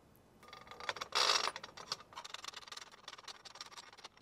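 Small metal clicks and taps as screws and washers are handled and fitted by hand into an aluminium motorcycle top-box base plate, with a short scrape about a second in.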